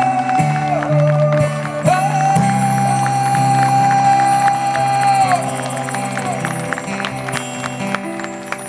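Live male voice singing long, held wordless notes over a strummed acoustic guitar. The longest note is held from about two seconds in to about five seconds, and the music softens near the end.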